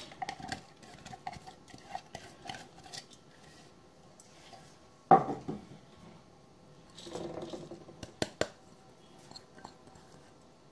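Finely chopped cabbage and carrot being tipped and shaken from a plastic bowl into a stainless steel mixing bowl, with scattered taps and knocks of bowl against bowl. The loudest knock comes about five seconds in, and a few sharp clicks come near eight seconds.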